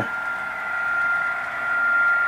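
Model train running along the layout's track: a steady rushing hum with a thin high whine through it, growing slightly louder.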